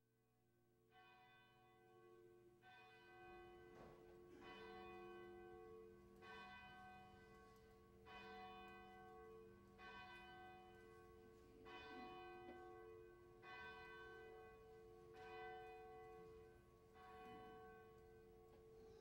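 A church bell tolling faintly and evenly, about ten strikes roughly 1.8 seconds apart, each strike ringing on until the next.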